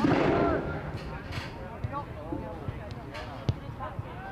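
Players' shouts and calls carrying across a soccer field, starting with a louder burst of voice and noise, and a single sharp thump about three and a half seconds in, such as a ball being kicked.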